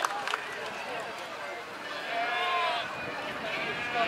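Sheep bleating: one long bleat about halfway through and another starting near the end, over background chatter.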